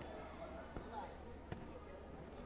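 Taekwondo kicks striking a padded body protector: two sharp thuds about three quarters of a second apart, over the murmur of voices in a sports hall.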